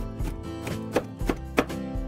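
Kitchen knife cutting carrot into thin matchstick strips on a plastic cutting board: a steady run of sharp chops, two or three a second.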